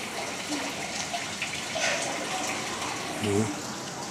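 Water running steadily in a small stream, a continuous rushing trickle.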